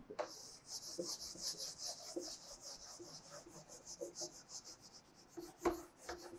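Felt-tip marker writing digits on a whiteboard: a quick run of scratchy strokes, faint and high. Near the end there is a single sharp knock.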